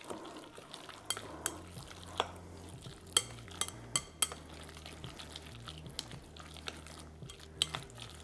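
Chopsticks stirring raw minced chicken and shrimp dumpling filling in a glass bowl, with irregular light clicks as they knock against the glass.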